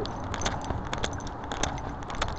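Irregular clicks and rustling from a body-worn camera rubbing and knocking against clothing as the wearer walks, over a low, steady street noise.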